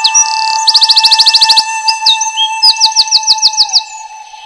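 Birds chirping in quick curved calls and fast trills, over steady held tones of background music.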